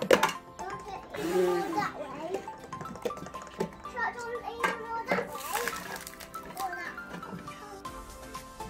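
Children's voices and chatter over upbeat background music, with one sharp knock just at the start as a plastic toy golf club strikes the ball.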